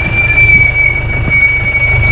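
Jeep driving on a rough dirt track: a low engine rumble, with a loud steady high-pitched whine held over it.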